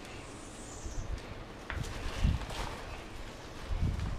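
Soft rustling and handling of the kite's leading-edge fabric and bladder as the bladder end is slid in, with a faint click and a couple of low dull thumps.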